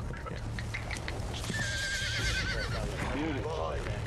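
Horse neighing: one wavering whinny about a second and a half in, lasting about a second.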